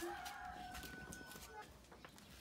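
A rooster crowing faintly: one drawn-out, steady note lasting about a second.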